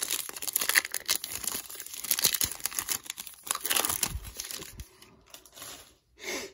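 A football trading-card pack's foil wrapper being torn open and crinkled by hand. It makes a dense run of crackling for about four seconds that fades out near the end.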